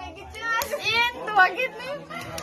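Several high-pitched voices, with children among them, chattering and exclaiming.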